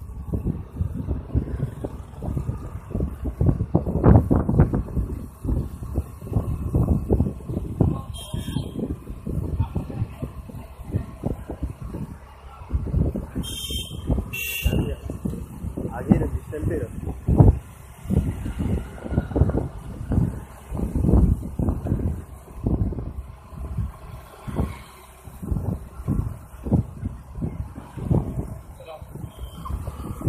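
Wind buffeting the microphone in irregular low gusts while riding along a road on an electric bicycle, with a couple of brief high beeps near the middle.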